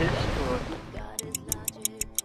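Stopwatch ticking sound effect, fast and even at about six ticks a second, starting about a second in over faint music, marking a time-skip transition.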